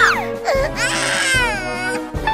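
A small child's crying voice: a short cry ends just after the start, then one long wavering wail follows from about half a second in to near the end. Background music plays underneath.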